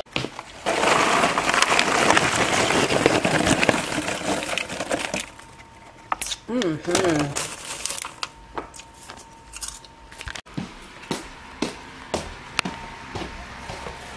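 A steady crinkling rustle for the first few seconds, then a hand rummaging through popcorn in a plastic bowl: scattered light crunches and clicks.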